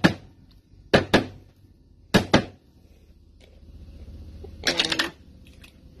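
Sealed glass pasta-sauce jar being knocked around its metal lid to break the vacuum so it will open: three pairs of sharp knocks about a second apart, then another short sound near the end.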